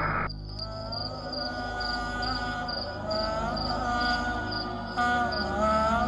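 Cricket chirping, a short high pulse about twice a second, over slow wordless background music with long, wavering held notes.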